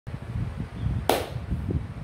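Irregular low knocks and rumbles, with one short, sharp hissing burst about a second in that dies away quickly.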